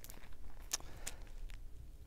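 Faint rustling and a few light taps of thin Bible pages being turned by hand, close to a clip-on microphone.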